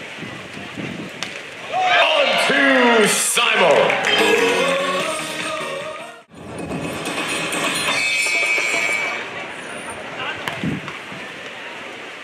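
Match-broadcast sound after a point is won: loud excited shouting over stadium music for a few seconds, cut off abruptly about six seconds in, then music and arena ambience at a lower level.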